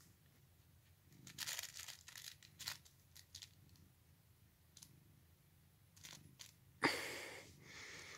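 Rustling and crinkling from a cat nuzzling and chewing at a cloth catnip pouch while being petted: scattered soft rustles, then a louder, sudden rustle near the end that trails off.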